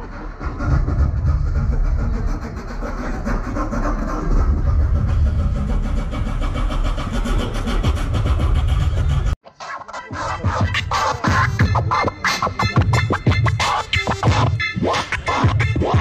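Loud music with a deep bass, then, after a sudden break about nine seconds in, a DJ scratching a vinyl record on a turntable over a beat in quick, choppy strokes.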